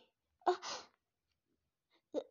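A woman's brief, breathy vocal exclamation, a startled 'ah', about half a second in.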